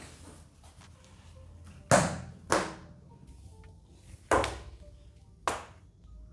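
Four sharp whacks in about four seconds, the first the loudest: a rubber sandal being slapped down to swat a large spider.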